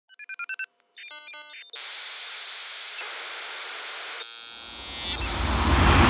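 Electronic intro sound effect: a quick run of short beeps, then TV-style static hiss, then a rumble and hiss that swell up toward the end.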